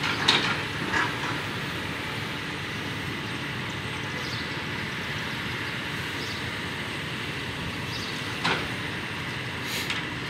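Excavator running steadily as it works demolition debris, with a few sharp clanks and crashes of debris: two near the start and two near the end.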